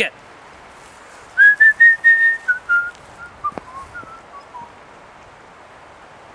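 A man whistling a short phrase of held notes that step downward in pitch, starting about a second and a half in, loud at first and fading over about three seconds. A single faint tap falls in the middle of it.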